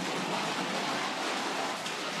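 Hard plastic chair casters on a home-made PVC-pipe cat wheelchair rolling fast across a tiled floor, a steady rushing noise.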